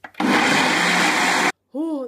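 Ninja blender motor running loud and steady, blending a spinach and fruit smoothie in its single-serve cup, with a faint steady whine over the noise; it cuts off abruptly after about a second and a half.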